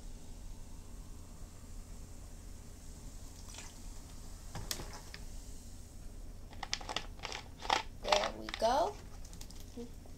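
Ginger ale being poured from a 2-liter plastic bottle into a plastic tumbler, faint at first, then a quick run of sharp clicks and crinkles from the plastic bottle being handled in the last few seconds.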